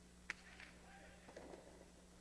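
A single sharp crack about a third of a second in: a jai-alai pelota being struck, heard over faint court ambience with a few soft sounds after it.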